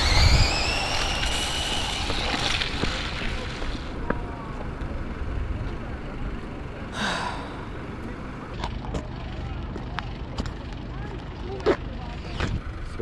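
Electric drive motors and gearing of a motorized LEGO Technic McLaren P1 RC car, whining and rising in pitch as it accelerates hard, with tyre rumble on asphalt. The whine fades out after about three seconds as the run ends with a wheel coming off.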